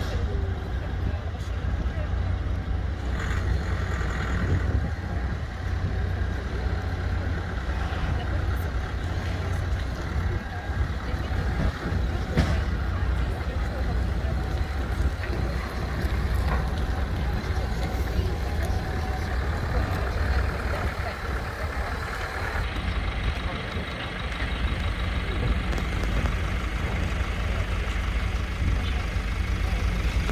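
Pickup truck engine running as it drives slowly down a ship's loading ramp onto the quay, over a steady low rumble.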